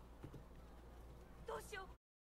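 Film soundtrack played quietly: hoofbeats under a man's shouted line near the end, then a sudden cut to silence.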